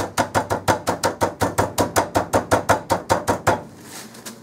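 A hand pounding a zip-top bag of pretzels on a wooden cutting board to crush them: a fast, even run of blows, about seven a second, that stops about three and a half seconds in.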